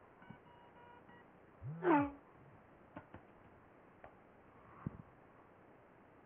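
A short electronic alert of steady tones, under a second long, from an iPhone's speaker as the BeejiveIM messaging app, left running in the background, receives a new message. About two seconds in comes a short voiced sound whose pitch rises and falls, the loudest thing here, followed by a few faint clicks.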